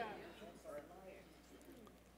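A man's voice trailing off, then faint wavering voices that fade to near silence a little past a second in.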